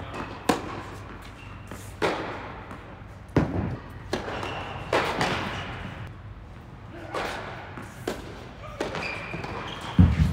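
Tennis balls struck by rackets and bouncing on an indoor hard court: sharp, separate hits every second or so, each with an echo in the large hall.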